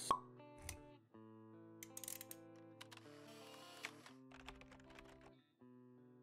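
Quiet logo-intro jingle of held musical notes, opening with a single sharp pop and dotted with a few light clicks.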